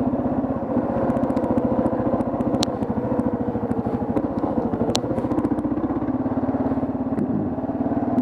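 Kawasaki KLR650's single-cylinder four-stroke engine running steadily at low speed, its even beat heard from the helmet camera, with two sharp ticks partway through.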